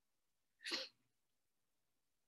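A single short, hissy burst of breath from a person, lasting under half a second, in an otherwise quiet room.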